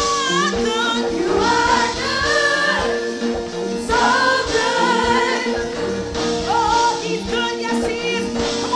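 Live gospel worship song: several women singing together into microphones over instrumental backing with held chords.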